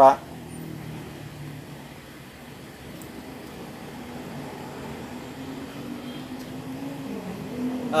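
Faint, steady low hum of a motor in the background. Its pitch rises slowly over several seconds and drops near the end.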